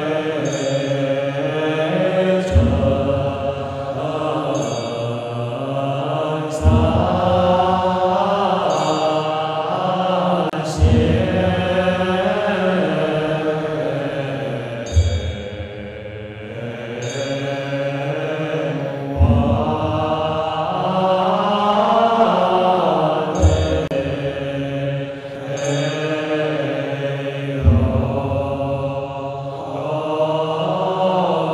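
Buddhist monastics chanting a slow, drawn-out melodic verse of the evening service in unison, with a deep percussion stroke about every four seconds keeping the pace.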